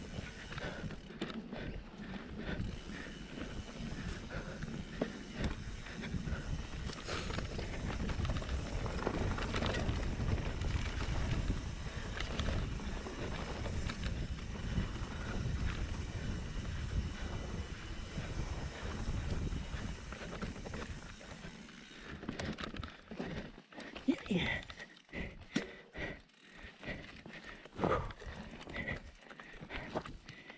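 Mountain bike rolling down a dirt singletrack: a steady rumble of tyres and wind on the microphone. In the last several seconds, as the trail turns rockier, it breaks into a choppier rattle of knocks and clicks.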